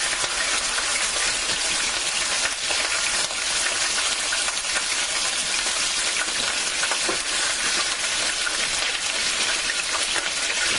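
Partially defrosted chicken breasts sizzling in hot vegetable oil in a large stainless-steel skillet, a steady dense crackle as they brown over medium heat.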